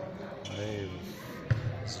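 A basketball bouncing once on a hall floor about one and a half seconds in, a single low thud, with a man's voice briefly heard before it.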